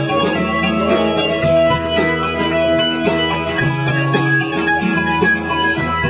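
A live acoustic band playing a song, with strummed acoustic guitar chords carrying a steady rhythm.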